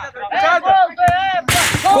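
Young men's voices calling out, then about one and a half seconds in a sudden loud hit with a brief rushing rattle after it: a football struck hard in a penalty kick.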